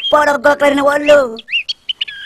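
A character's drawn-out, steady-pitched voice for the first part, then a few short, high bird chirps near the end as the voice stops.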